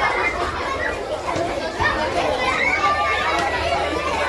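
A crowd of schoolchildren chattering and calling out all at once as they run about playing.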